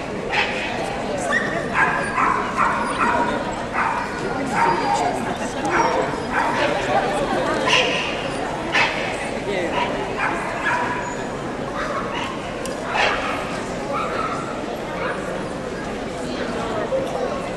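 Dogs barking and yipping over and over, short sharp yips coming irregularly every second or so, over steady indistinct crowd chatter.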